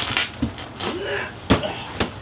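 A large cardboard shipping box being handled and knocked down onto the ground, with one sharp thump about one and a half seconds in and a smaller knock before it.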